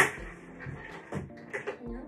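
One sharp, loud knock right at the start, dying away within about half a second, over background music with held notes.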